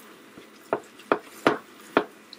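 Stirring thick beer bread batter in a plastic mixing bowl: the utensil knocks against the bowl in four sharp strokes a little under half a second apart.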